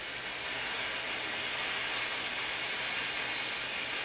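Commercial 75 PSI steam cleaner jetting steam from its hand-held steam gun nozzle: a steady hiss showing the volume of steam the machine delivers.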